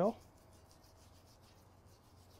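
A silicone basting brush being worked through a pool of oil on a flat cast-iron griddle, heard as faint, soft rubbing strokes.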